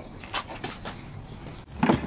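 A few faint knocks and scuffs, then a louder brief thump or rattle near the end.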